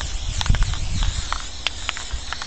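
Aerosol can of black spray paint hissing as it is sprayed in sweeps over glossy paper, with a few short clicks and a brief low rumble.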